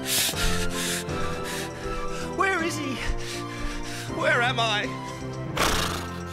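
A horse's harsh breaths and two short wavering whinnies, the first falling in pitch, about two and a half and four seconds in, over background music.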